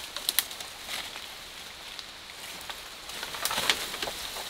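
Footsteps crunching through dry bamboo leaves and twigs on a steep slope, an irregular crackle with sharp snaps twice just after the start and a denser run of crackling near the end.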